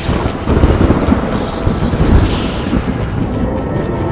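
A film sound-effect explosion: a deep, rumbling boom that sets in about half a second in and keeps rolling, over a dramatic music score.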